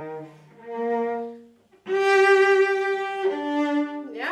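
Double bass played with the bow in a slow melodic phrase: a held note, a softer note that fades away, a short break, then a loud sustained higher note that steps down to a lower one.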